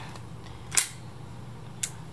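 Two sharp mechanical clicks about a second apart, the first louder, from a hand working the transport lever of a Sanyo MR-929-type reel-to-reel tape deck, over a steady low hum.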